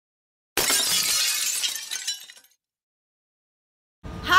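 Channel-intro sound effect: a sudden crash about half a second in, with a bright tinkling tail that fades out over about two seconds.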